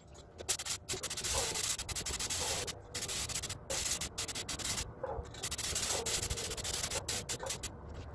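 Compressed-air gravity-feed paint spray gun hissing in repeated bursts of a second or so as the trigger is pulled and released, spraying paint.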